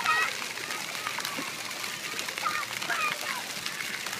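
High-pitched children's voices calling out in short bursts near the start and again later, over the light splashing of shallow pool water.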